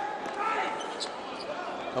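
Basketball game sound on the court: a ball bouncing on the hardwood floor a couple of times over the steady murmur of the arena crowd.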